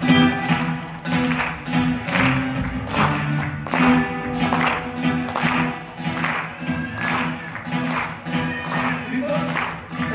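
Live worship band music led by a strummed acoustic guitar, about two strums a second over sustained low keyboard or bass notes.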